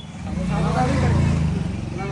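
A motor vehicle's engine running nearby, its hum swelling to a peak about a second in and then easing off, with indistinct voices in the street.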